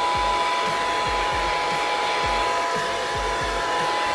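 Handheld hair dryer running on a light blow: a steady rush of air with a high steady whine from its motor.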